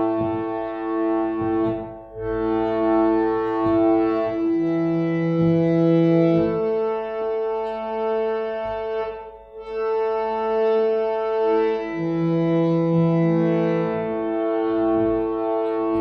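Harmonium playing a slow Hindustani alankaar practice exercise: long held reed notes stepping from one pitch to the next every second or so, with brief breaks about two and nine and a half seconds in.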